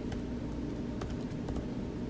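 A few faint, light clicks scattered over a steady low hum.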